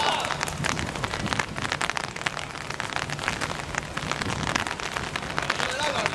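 Dense, irregular patter and splashing on a wet outdoor football court as players run and kick the ball.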